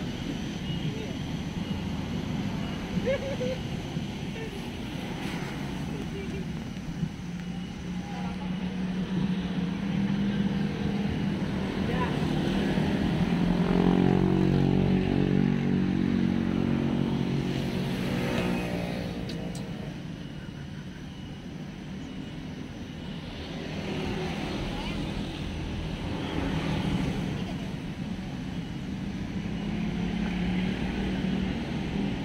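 Passing motor traffic: a vehicle's engine drones by, growing louder to a peak about halfway through and then fading, over a steady background hum of traffic.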